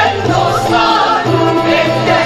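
Mixed choir of men and women singing a Turkish classical (art music) song in unison, with a saz ensemble accompanying.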